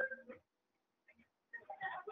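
A voice over a phone line trails off, then about a second of near silence, then faint voice-like sounds come back near the end.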